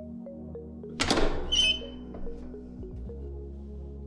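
Clamshell heat press being opened after a five-second tack: the upper platen releases with one loud clunk about a second in, followed by a short high-pitched ring. Background music plays throughout.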